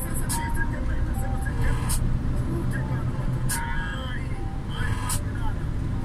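Steady low engine and road rumble inside a moving truck's cab, with a voice or music playing over it. A sharp tick recurs about every second and a half.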